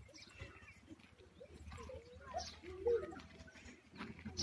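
Children's voices making short monkey-like chattering calls and squeals, wavering up and down in pitch, loudest about three seconds in.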